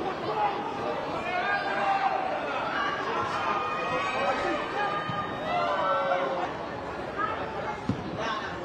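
Several men's voices calling out and talking over one another, unclear and echoing, as players shout on the pitch.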